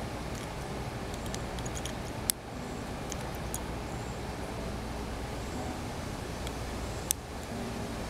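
A few sharp plastic clicks as a Harry's razor blade cartridge is snapped off and back onto its handle, the loudest about two seconds in and another about seven seconds in, with small ticks of handling between. A steady low outdoor background rumble runs underneath.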